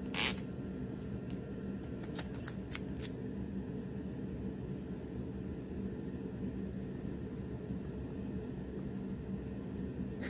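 Clear packing tape being handled and laid over a printed paper sheet: a short crackle of the tape right at the start and a few light crinkles about two to three seconds in, over a steady low hum.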